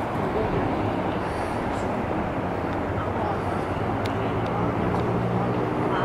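An engine drones steadily in the background, growing a little louder in the second half, amid outdoor noise and faint voices.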